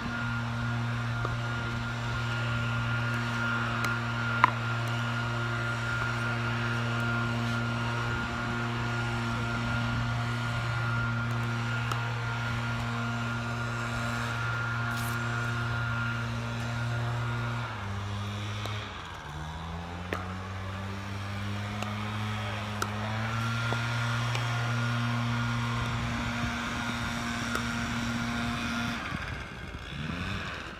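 A small engine running steadily in the background. Its pitch drops and climbs back up about two-thirds of the way through, then holds steady and cuts off near the end. There is one sharp knock a few seconds in and a couple of fainter knocks later.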